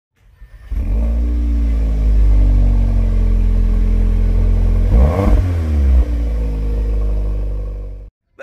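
2020 Audi TTS's 2.0-litre turbocharged four-cylinder starting up about a second in and settling to a steady idle. About five seconds in it gets one quick rev that rises and drops back to idle.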